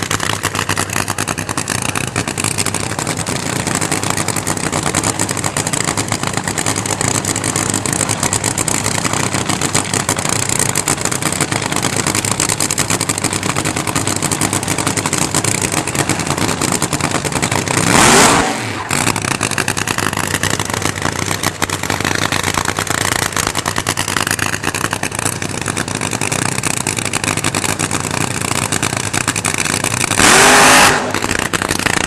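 Supercharged nitro-burning funny car engine running steadily at low speed, with one short, loud throttle blip that rises in pitch about eighteen seconds in.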